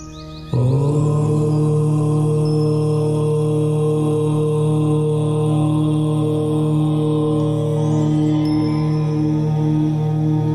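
A chanted "Om" starts abruptly about half a second in and is held as one long, steady drone over soft background music.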